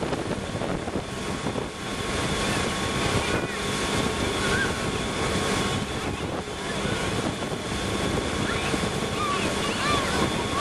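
Motorboat running steadily at speed while towing a water skier, with the rush of its churning wake and wind buffeting the microphone.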